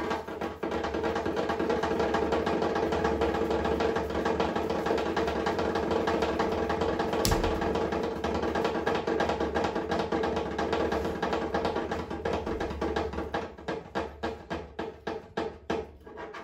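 Djembe played by hand in a fast, dense run of strokes, with one sharp crack about seven seconds in; over the last few seconds the playing thins to separate strokes and grows quieter.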